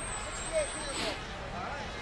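Faint voices over steady outdoor street noise at a parade, with a brief hiss about halfway through.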